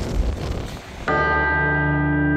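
Wind rumbling on the microphone for about a second, then a sudden, sustained bell-like chime with many ringing overtones starts and holds steady: the opening note of an end-card music sting.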